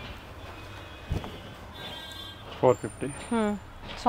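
A few short spoken words in the second half over a low, steady background rumble, with a single soft thump about a second in.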